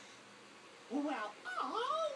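A baby squeals excitedly in high, wavering cries that rise and fall in pitch. The cries start about a second in, after a quiet moment.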